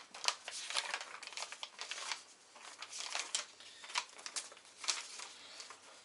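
Irregular rustling and crinkling with scattered small clicks, from things being handled on a workbench.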